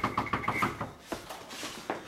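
Hurried footsteps and shuffling of several people crossing a floor: a quick run of steps in the first second, then a few scattered ones.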